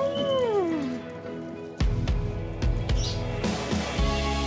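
Background music, with a Shetland Sheepdog giving one whine near the start that falls in pitch over about a second.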